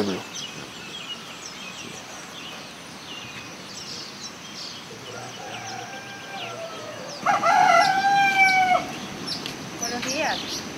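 A rooster crowing once near the end, one long call of about a second and a half that is the loudest sound, over scattered chirps of small birds.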